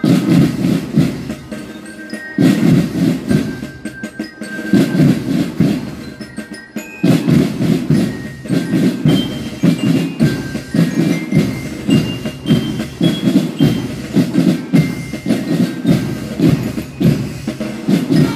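School marching band playing: drums beat a dense march rhythm, with short high melody notes ringing above them. The drumming comes in short phrases with brief gaps for the first seven seconds, then runs on without a break.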